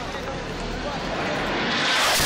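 Rushing noise of an incoming strike with faint voices. It swells over the last half second and breaks into an explosion at the very end.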